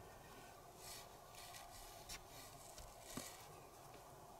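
Near silence: faint handling sounds of fingers working a needle and cotton thread through a tassel, with about three soft ticks, the loudest near the end.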